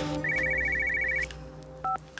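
Mobile phone ringing with an electronic ringtone: one rapid high trill about a second long. A short two-tone beep follows near the end.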